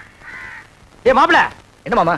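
Two harsh caws of a crow right at the start, then a man's loud shout about a second in.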